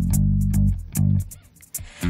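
Electric bass guitar playing a line of separate low notes in a live pop song, in a gap between sung phrases, with light ticks of percussion above it; the music drops almost out briefly about a second and a half in.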